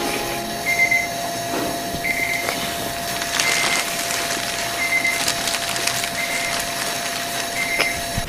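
A short, high electronic beep repeating about every second and a quarter over a steady tone and hiss.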